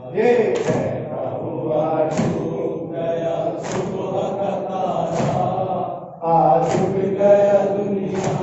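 A crowd of men chanting an Urdu noha (mourning lament) in unison. Sharp slaps keep time with it about every second and a half.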